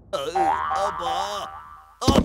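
Cartoon boing sound effect, a pitched tone that wobbles up and down for about a second and a half before fading.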